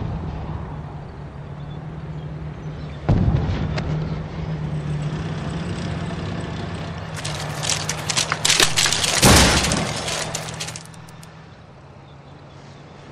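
War-film trailer sound effects: a heavy boom about three seconds in over a steady low hum, then a few seconds of crackling and breaking with a loud impact about nine seconds in, dying away near the end.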